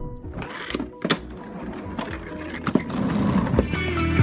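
Spin mop being worked in its bucket: a rough, noisy swishing with several sharp plastic clicks, over background music.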